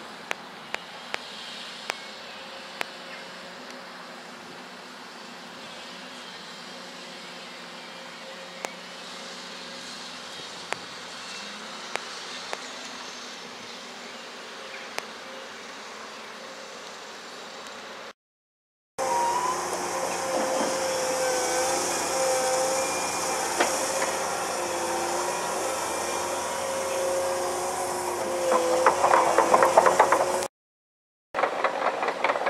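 Hydraulic excavator at work, faint and distant at first with a few sharp clicks. After a cut about two-thirds in, a tracked excavator's diesel engine and hydraulic whine are loud and close, the whine shifting in pitch, with a burst of clattering near the end.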